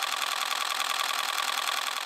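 Rapid, steady mechanical clatter of a small machine running, with a faint high tone through it. It cuts off suddenly just after the end.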